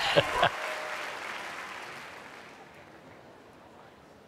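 Studio audience applause dying away over about three seconds, with a short laugh at the very start.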